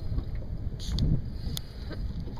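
Wind buffeting the microphone in a low, uneven rumble, with a few faint light clicks about a second in and again a little later.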